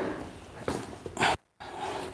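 Yoga blocks being handled and set down on a mat, giving a few soft knocks, the loudest a little past a second in. The sound cuts out completely for a moment just after.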